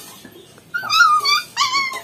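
Puppy crying out twice, two high-pitched whining cries in the second half, as it is grabbed and held. The puppy has been bitten by a larger dog.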